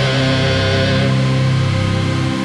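Rock band music: the song's closing chord held and ringing steadily, with no new strokes, at the very end of the track.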